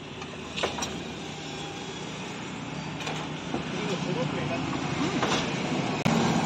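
Steady roadside traffic noise, with faint voices of people talking nearby.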